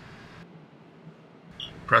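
A pause in narration: faint room tone, with a brief faint high blip near the end. The narrator's voice starts again right at the end.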